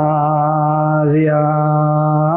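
A man chanting in the Ethiopian Orthodox style, holding one long, nearly level note, with a short hissing consonant about a second in before the note carries on.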